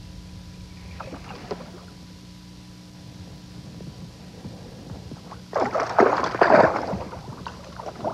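A hooked bass splashing at the surface beside the boat: a loud burst of splashing about five and a half seconds in, lasting more than a second, over a steady low hum.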